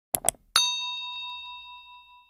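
Notification-bell sound effect: two quick mouse clicks, then a bright bell ding with several clear tones that fades away over about two seconds.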